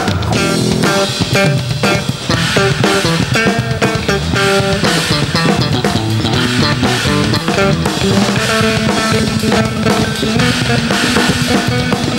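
Live band music: electric bass guitars playing many short notes over a steadily played drum kit.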